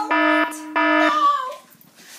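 An electronic alarm beeping: pulses of one steady tone repeating about one and a half times a second, stopping suddenly about a second and a quarter in.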